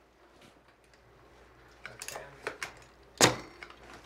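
Cat5 cables and plastic jack hardware being handled in a structured-wiring panel: a few small clicks and rattles, the sharpest about three seconds in, as a modular plug is pushed into a jack.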